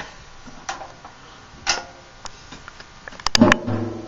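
Scattered light clicks and taps, then a quick cluster of louder knocks near the end.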